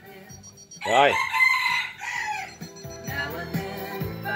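A rooster crows once, loudly, starting about a second in, the pitch rising, holding and then falling away. Music from a mini hi-fi system plays faintly before it and comes back after it.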